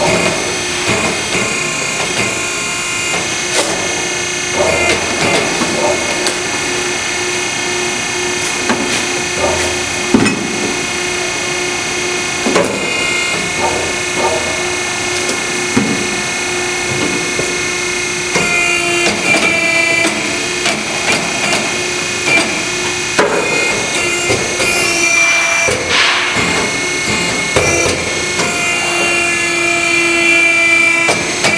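ARI tire-cutting machine running steadily, its motor giving a constant hum and whine, as the blade cuts through a rotating foam-filled loader tire, with irregular knocks and clicks throughout.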